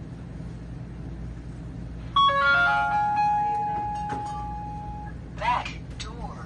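An electronic chime sounds about two seconds in: a quick run of ringing notes that hold and fade away over about three seconds, over a steady low hum.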